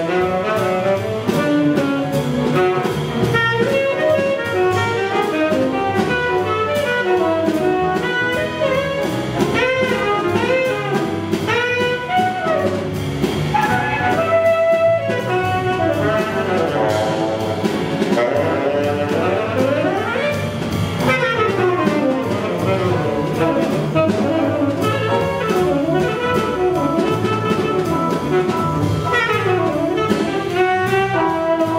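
Live jazz: a tenor saxophone solos in fast runs of notes that sweep up and down, over walking upright bass and drums.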